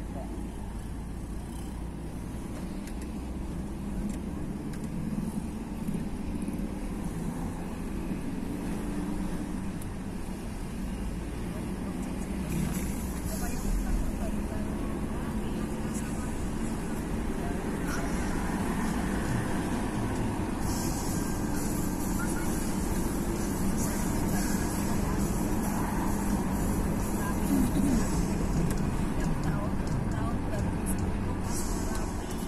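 Car interior noise while driving: a steady low rumble of engine and tyres heard from inside the cabin, growing gradually louder as the car gathers speed. A higher hiss joins about two-thirds of the way through.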